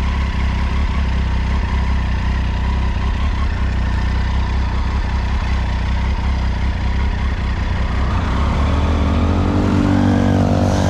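Triumph Tiger three-cylinder motorcycle engine running at low revs as the bike rolls along, its pitch climbing near the end as it accelerates.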